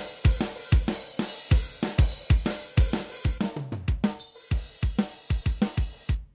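Multitrack drum kit recording played back from a DAW, kick, snare and cymbals in a steady, fast beat, with the tracks at their untrimmed levels before gain staging.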